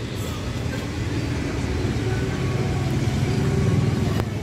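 A motor vehicle's engine running in a parking lot with traffic noise, growing somewhat louder toward the end.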